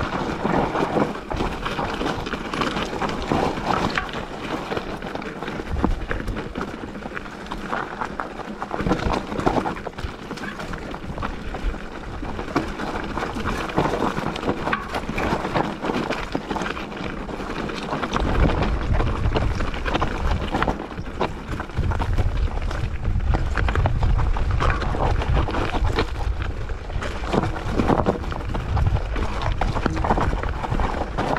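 Mountain bike rolling down rocky singletrack: tyres crunching and clattering over loose stones, with many small knocks and rattles from the bike. A heavier low rumble joins in a little past halfway.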